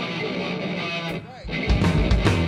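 Live rock band: an electric guitar chord rings out, then about a second and a half in the drum kit and bass come in hard and the full band plays on a steady beat.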